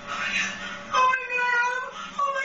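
A woman shrieking in fright: a breathy gasp, then about a second in a high, held scream.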